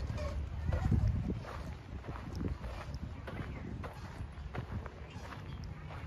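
Footsteps of someone walking along a path, with wind rumbling on the microphone for about the first second and a half.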